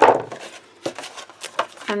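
Metal scissors set down on a wooden table with a sharp clack, then a few faint rustles and taps as sheets of cardstock are picked up and handled.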